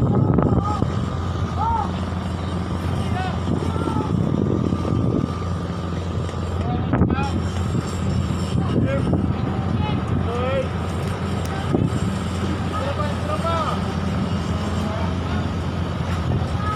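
Steady low drone of a roll-on/roll-off ferry's engines running, with scattered distant voices over it.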